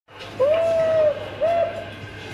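Steam whistle from the ZIMO MX696V sound decoder in an LGB U52 model steam locomotive, played through its speaker: one long blast, then a short one.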